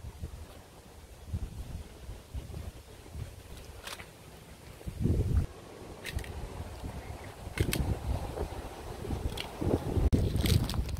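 Wind buffeting the microphone in uneven gusts, strongest about five seconds in, with a few faint clicks.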